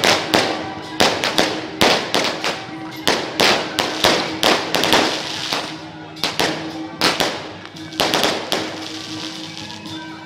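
Firecrackers going off in a string of irregular sharp cracks, several a second, thinning out over the last couple of seconds. Music with a steady held note runs behind them.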